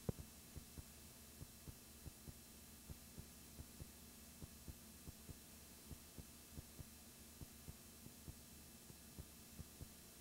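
Faint heartbeat sound effect: a double thump repeating a little faster than once a second, over a low steady hum.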